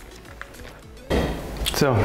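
A lidded plastic bait bucket being handled, with a sudden clattering, scraping noise about a second in after a quieter stretch.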